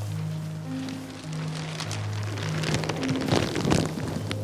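Soft film music with long held low notes, over the crinkling and rustling of a clear plastic sheet being pushed through and pressed in an embrace; the crinkling grows thicker and loudest in the last second or so.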